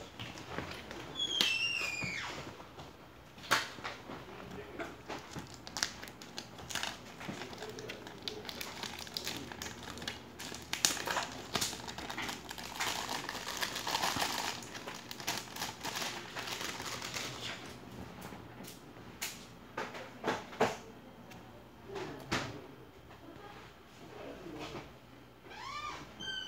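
Paper and packaging being handled and unfolded by hand: irregular rustling with scattered light clicks and taps. A short falling squeak comes about a second in.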